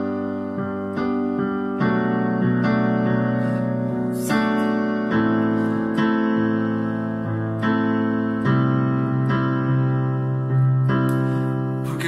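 Electronic keyboard in a piano voice, played with both hands: full chords struck in a steady rhythmic pattern with a strong bass, a rock-tinged rhythmic-ballad accompaniment. It moves through G, B minor seventh, A minor and C to C minor, the chord changing every second or two.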